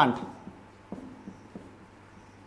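Marker pen writing on a whiteboard: faint, scattered strokes and light ticks as letters are drawn.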